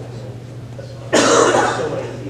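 A person coughing once, loudly, a little over a second in, the sound lasting under a second.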